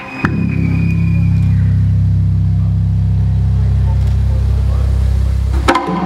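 A deep, steady bass drone in the performance soundtrack, heavy and low, comes in just after the music breaks off. It cuts off near the end as percussion hits start again.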